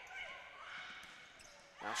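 Faint court noise of an indoor volleyball rally in progress, with no clear ball hits.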